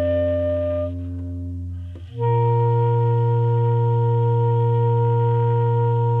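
Saxophones playing long held notes: a melody note over a low drone fades out about a second in, then a new chord with a strong low note comes in about two seconds in and is held steady as the closing chord of the piece.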